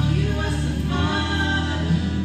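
Live singing into microphones over instrumental accompaniment, amplified through PA speakers, with several voices.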